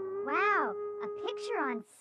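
A voice making a drawn-out exclamation that rises and then falls in pitch, followed by a few short vocal sounds, over one held background music note.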